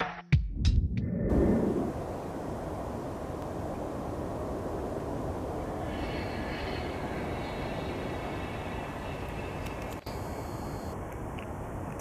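The last notes of a short intro jingle, then the steady rushing noise of distant jet engines across an airport. A faint high turbine whine rides on it from about six to ten seconds in.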